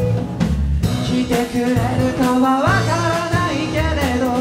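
A rock band playing live: drum kit, bass and electric and acoustic guitars, with a young man singing the lead vocal. The singing pauses briefly at the start and comes back in about a second in while the band keeps playing.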